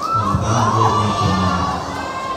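A crowd of schoolchildren cheering and shouting, with music playing underneath.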